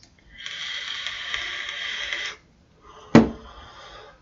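A long draw on an electronic vape: a steady hiss of air and the firing coil for about two seconds, then a short sharp sound about three seconds in and a faint breathy exhale of the vapour.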